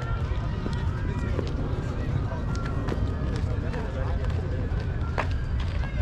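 Indistinct voices calling out at a distance, over a steady low rumble, with a few faint clicks.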